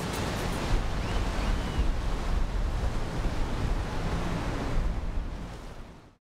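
Sea waves washing ashore, a steady rush that fades out over the last second or so.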